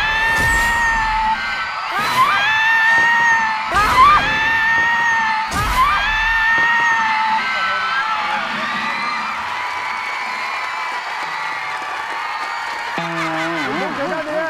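A dramatic reveal music sting with four heavy booming hits about two seconds apart. Studio people shout and scream over it in rising, held cries. The music carries on more evenly in the second half.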